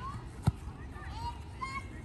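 Faint high shouts of young children playing soccer on the field, with one sharp thump about halfway through.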